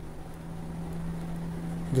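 A steady low hum in a small room, one even tone with faint background hiss and no distinct strokes.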